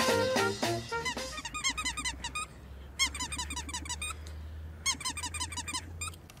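Jazzy brass music fading out about a second in, then three runs of rapid, high-pitched squeaks, each run under a second long, over a steady low hum.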